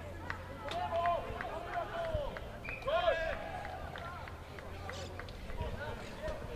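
Rugby players shouting across an open pitch: a string of short, separate calls, the loudest about three seconds in, with scattered light clicks among them.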